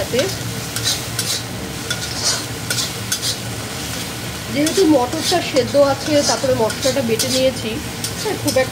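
A flat metal spatula stirring and scraping a thick spice paste that sizzles as it fries in a black iron kadai, in repeated strokes against the pan. This is the masala being fried before the boiled peas go in for ghugni.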